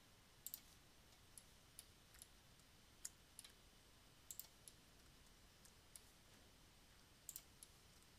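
Faint computer mouse clicks, about fifteen at irregular intervals and some in quick pairs, over near-silent room tone.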